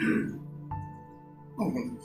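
A man's voice trails off into a pause filled by soft, steady background music, with a held note coming in sharply under a second in. A short vocal sound follows near the end.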